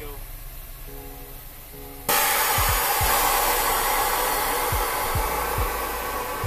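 Air Lift V2 air suspension on a 2008 Honda Civic Si airing out: a loud, steady hiss of air venting from the air bags starts suddenly about two seconds in as the car drops to the ground.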